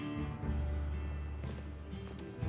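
Acoustic guitar strummed in a slow song, with a low note held underneath from about half a second in; no singing.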